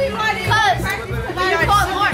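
Several boys talking and shouting over each other, excited chatter, over background music with a heavy bass.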